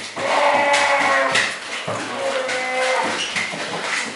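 Brown bear cubs calling, several drawn-out cries overlapping and following one after another.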